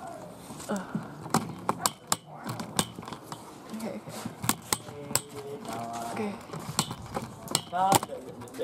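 Young people's voices talking indistinctly in short bursts, mixed with many sharp clicks and knocks scattered throughout.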